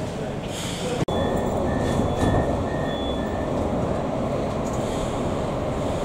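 Steady rumble of a Metrowagonmash metro train on Budapest's M3 line. About a second in, the sound breaks off sharply, and then five short high beeps, about two a second, sound over the rumble inside the car, typical of the door-closing warning.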